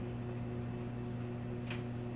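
Steady low hum in a small room, with a single light click near the end.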